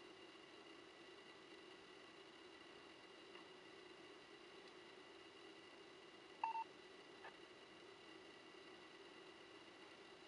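Near silence: a faint steady hum with thin high tones, broken about six and a half seconds in by one short double beep.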